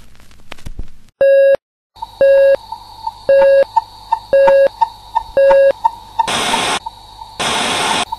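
Electronic beeps: after a second of crackle, a short steady tone sounds about once a second, five times, over a faint fast ticking and a thin high whine. Near the end come two loud bursts of static hiss.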